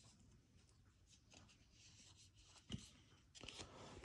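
Near silence, broken by faint handling of trading cards: one soft tap a little under three seconds in and light rustling near the end.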